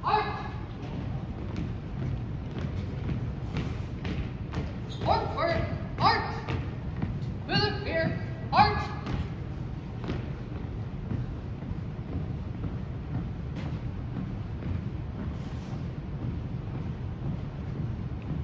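Shouted drill commands echoing in a gymnasium: one call right at the start, then four drawn-out calls between about five and nine seconds in. After that, the drill team marching on the hardwood floor, with scattered thuds and knocks.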